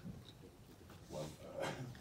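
A man coughing twice into a handheld microphone, two short coughs a little over a second in; he is sick with a cold.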